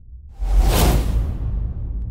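Cinematic whoosh sound effect over a deep bass rumble, from a logo sting. It sweeps in suddenly about half a second in, and its hiss fades within a second while the low rumble carries on.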